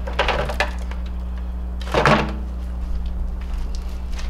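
Plastic Nerf blasters rattling and knocking as they are pulled out of a microwave oven and handled. There are bursts of this near the start and about two seconds in, over a steady low hum.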